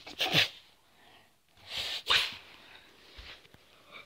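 Two short, breathy bursts from a person, about a second and a half apart.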